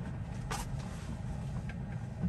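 Steady low road and tyre noise heard inside the cabin of a moving Tesla electric car, with no engine note. A brief hiss about half a second in.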